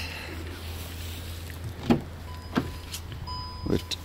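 Car front door being unlatched and swung open: a sharp click of the latch about two seconds in, followed by a couple of lighter knocks. A faint steady high tone starts soon after the click.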